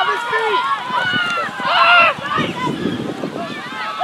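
Many overlapping voices shouting and calling out as the ball is run in a schoolboy rugby match, growing loudest just under two seconds in.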